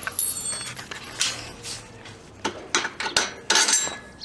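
Metal pin clinking and rattling against a welded steel hitch-mounted carrier bracket as it is worked loose and pulled out: a ringing clink at the start, another at about a second, and a cluster of knocks near the end.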